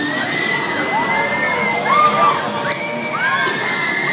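Riders screaming on a spinning carnival thrill ride, many high screams overlapping and rising and falling in pitch as the gondolas swing.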